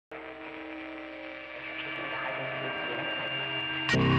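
Sustained drone of several steady tones, slowly swelling in loudness: the trailer's intro sound bed under the studio logos. A sudden loud hit just before the end brings in the song.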